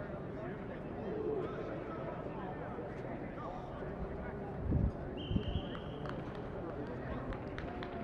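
Voices of players talking and calling out across an open sports field, with two low bumps a little past the middle and a brief high steady tone just after them.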